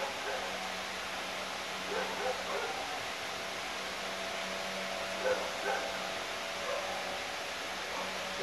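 Quiet room tone: a steady hiss with a low hum, and a few faint, short distant sounds scattered through it.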